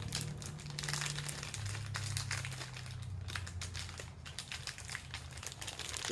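Foil wrapper of a blind-packaged vinyl mini figure crinkling continuously as it is turned and squeezed in the hands, feeling for the shape of the figure inside.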